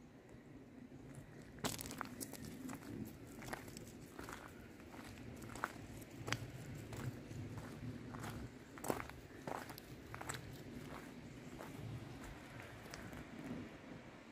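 Quiet footsteps of someone walking outdoors: a string of irregular light crunching steps, about one or two a second, starting about two seconds in.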